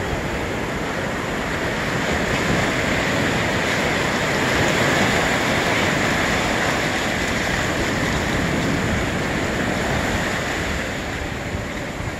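Ocean surf breaking and washing in over the shallows, a steady rushing wash that swells to its loudest about halfway through and eases near the end.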